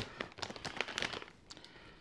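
A plastic chip bag crinkling as it is handled and snipped with scissors: one sharp click right at the start, then scattered small snips and rustles that thin out toward the end.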